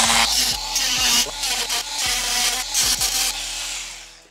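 Milwaukee oscillating multi-tool cutting through an aluminum LED strip channel: a harsh, rasping buzz of blade on metal that wavers in level as it bites, then dies away near the end.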